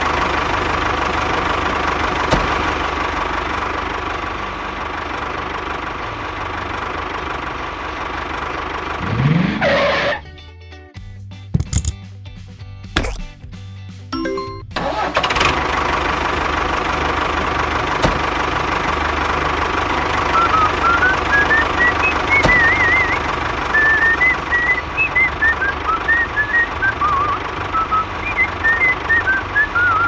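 A tractor engine runs steadily for the toy tractor. It breaks off for about five seconds a third of the way in, then resumes, with a high tune played over the last third.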